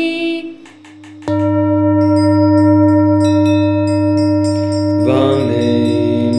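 The tail of a chanted vocal fades out, then a deep struck bell tone sounds about a second in and rings on steadily, joined by higher chime notes. Singing comes back in over the ringing near the end.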